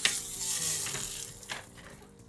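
Translucent plastic Bakugan ball launched into a plastic arena tray. It lands with a sharp clack, then spins on the cards with a rattling whir that fades over about a second and a half.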